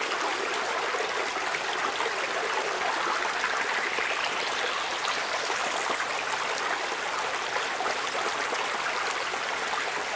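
A field recording of running water, a steady hiss, played back through an equalizer whose narrow boost sweeps slowly upward from the low mids to the very top. A brighter band rises in pitch through the hiss, and near the end the boosted highs sound pretty sizzly.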